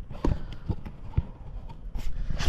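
A few short handling knocks from a GoPro camera being moved and set in place, about half a second apart.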